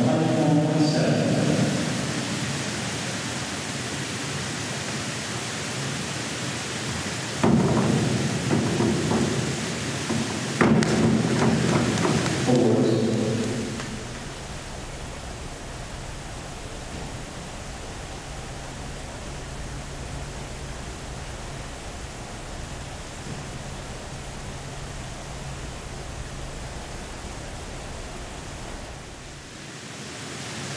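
Steady, echoing noise of an indoor pool hall, with a louder stretch of voices from about 7 to 13 seconds and a sharp click near 11 seconds. After that it settles into a quieter, steady wash with a low hum.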